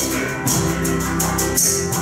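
Live band playing an instrumental passage: electric guitar, bass guitar and drum kit, with recurring cymbal strokes over sustained chords.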